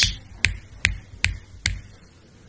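A man snapping his fingers four times in an even rhythm, a little under half a second between snaps.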